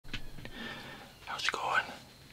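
A man whispering in short breathy phrases, preceded by two brief clicks about a tenth and half a second in.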